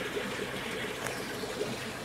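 Steady running and trickling water from a large aquarium's water circulation.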